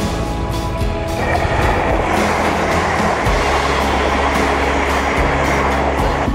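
Electric train passing through a level crossing close by, a loud rushing rumble that sets in about a second in and lasts about five seconds. Background music plays underneath.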